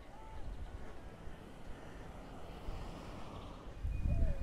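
Wind buffeting the microphone outdoors as a quiet, uneven low rumble.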